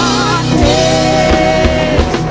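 Live worship band: a singer wavers briefly, then holds one long note over strummed acoustic guitar and a drum kit keeping the beat.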